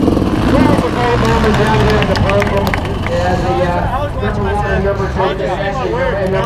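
Kawasaki KX500 500cc two-stroke single running steadily at low revs as the bike rolls slowly, with voices of people talking over it.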